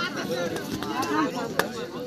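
Overlapping shouting and chatter from kabaddi players and onlookers, with a single sharp smack about one and a half seconds in that stands out as the loudest sound.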